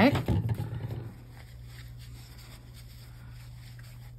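A spoken word at the start, then a steady low background hum of room tone with no other distinct sounds.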